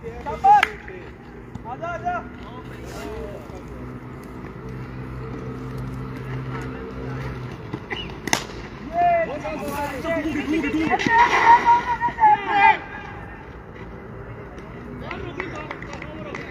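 Players calling out across an open cricket field, with one sharp crack of a bat hitting the ball about eight seconds in, followed by a run of louder excited shouts. A steady low engine-like hum runs under the first half and stops abruptly at about seven and a half seconds.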